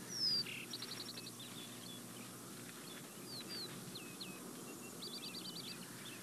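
Faint birds chirping: scattered short whistled notes and two quick trills of about seven notes each, one about a second in and one near the end, over a faint steady low hum.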